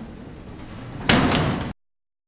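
Metal lift doors sliding shut and closing with a loud bang about a second in, over a low rumble; the sound cuts off suddenly just after.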